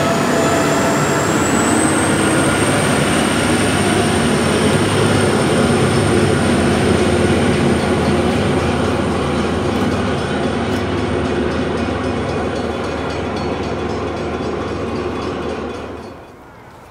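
NSW XPT passenger train running past, its carriages rolling by in a steady rumble, with a thin high whine that rises in pitch over the first two seconds and then holds. The sound fades slowly as the train draws away.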